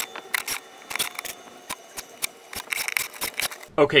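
Cordless drill driving screws into wooden wall slats: a faint steady whine under a run of irregular sharp clicks and knocks.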